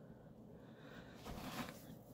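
Near silence: quiet room tone, with a faint soft rustle a little past halfway through.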